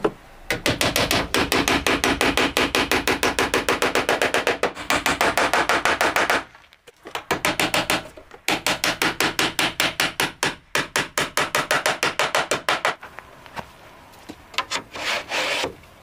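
A hand tool rubbing and rasping along wooden trim in quick, even back-and-forth strokes, about six or seven a second. Two long runs of strokes are split by a short pause, followed by a few separate strokes near the end.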